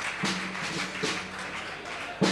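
A low note held steadily on an instrument, with a few light taps of handling on stage.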